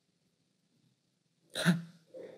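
Near silence, then about one and a half seconds in a single short, sharp vocal sound from a man, with a weaker one just after it.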